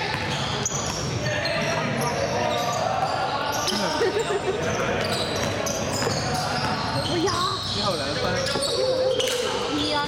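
A basketball being dribbled on a hardwood gym floor, the bounces echoing in a large hall, under indistinct shouts and chatter from players and onlookers.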